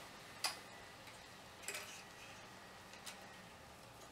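Three faint, sharp clicks and taps from hands handling an opened disk-drive chassis and its wiring, about a second or more apart.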